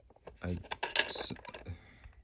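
Light plastic clicks and taps from a toy truck trailer's fold-out ramp being handled. A short spoken syllable and a breathy hiss come about a second in.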